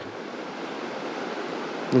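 Steady rushing of flowing creek water, an even hiss with no distinct events.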